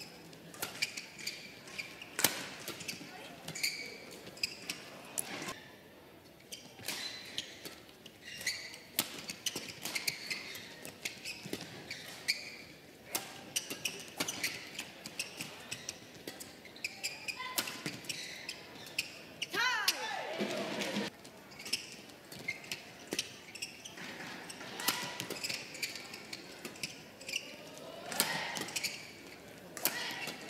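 Badminton rally: sharp racket-on-shuttlecock strikes at an irregular pace, with players' shoes squeaking on the court floor, a long sweeping squeak about twenty seconds in and another near the end.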